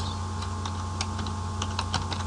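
Computer keyboard typing: a run of light key clicks as a short word is typed, over a steady low hum.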